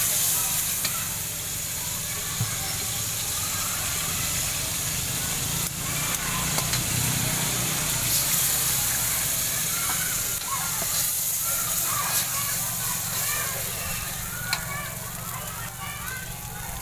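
Oil sizzling steadily in an aluminium wok, with an egg frying and being scrambled in it from about halfway through. A few sharp taps of the metal spatula against the wok, and faint voices in the background.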